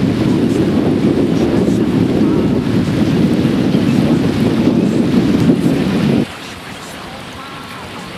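Strong wind buffeting the microphone over the wash of surf on a sea beach, a loud steady rumble. About six seconds in it cuts off abruptly to a much quieter wind-and-surf background.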